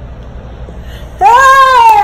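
A woman's loud, drawn-out cry of shock and dismay, starting just over a second in, rising slightly and then sliding down in pitch.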